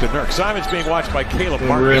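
A man talking over game broadcast sound, with a basketball bouncing on the court as it is dribbled.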